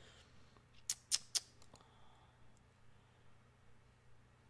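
Three quick, sharp clicks about a quarter second apart, then a couple of fainter ticks, from a computer mouse, over a faint steady low hum.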